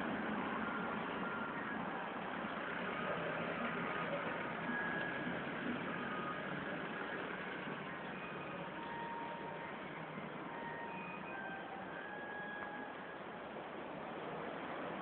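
Steady outdoor background hiss, with faint brief high tones scattered through it.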